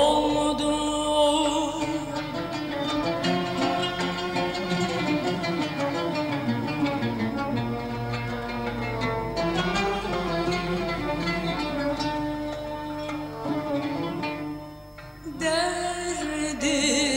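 Instrumental passage of a Turkish art-music song played by a small ensemble, with no voice. The music dips briefly near the end, then picks up again.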